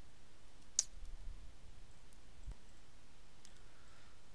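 A few scattered clicks from a computer keyboard and mouse while code is edited, the sharpest a little under a second in and another about two and a half seconds in, over faint room noise.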